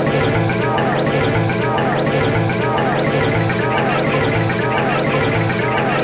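Loud, heavily processed cartoon soundtrack, music and voices mixed together, looping in a pattern that repeats about once a second.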